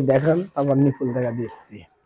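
A man's voice speaking in short, drawn-out phrases.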